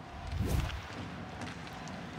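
A short whoosh transition sound effect with a low thud about half a second in, marking the on-screen graphic. After it comes a low, steady background noise.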